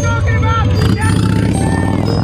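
Harley-Davidson cruiser motorcycles riding along the road, their engines giving a steady low rumble, with a person's voice over it.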